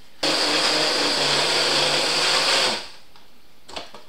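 Countertop blender running at high speed for about two and a half seconds, grinding dried gingerbread crumbs into a fine powder, then cutting off suddenly. A couple of light clicks follow near the end.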